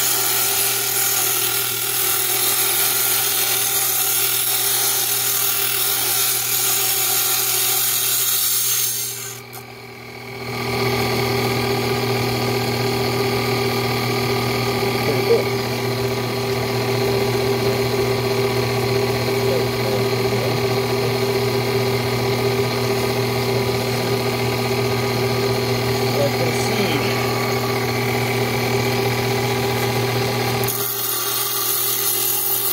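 Water-cooled lapidary trim saw with a diamond blade grinding through agate with a steady hiss for about the first nine seconds. After a brief dip, the saw runs on with a steady motor hum and no stone in the cut.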